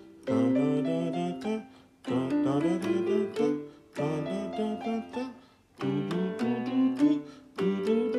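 Piano keyboard playing a fingering exercise: short stepwise runs of notes up and down the scale (do re mi fa so), played in four phrases of about two seconds each with brief pauses between them.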